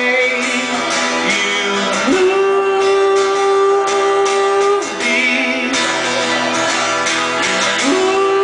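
A man singing to his own strummed acoustic guitar, holding two long notes, one in the middle and another starting near the end.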